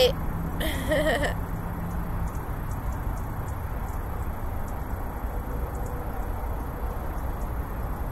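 Steady low outdoor background rumble, with a brief vocal sound from the woman about a second in.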